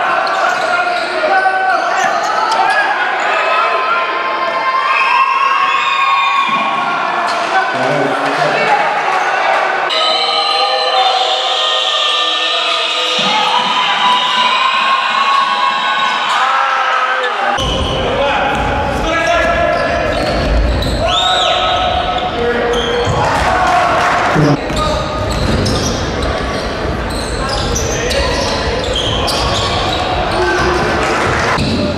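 Live sound of a basketball game in an echoing gym: a ball bouncing on the hardwood court, with players' and spectators' voices throughout. About halfway through, the sound turns abruptly fuller and heavier in the low end as the footage switches to another game.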